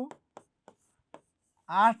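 Pen writing on a board: a handful of short, separate ticks as the strokes are made.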